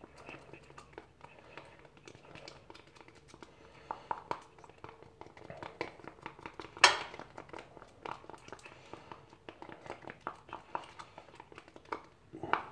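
A spoon stirring two-part fiberglass resin and hardener in a plastic cup: a run of light ticks and scrapes against the cup's sides, with one louder click about seven seconds in.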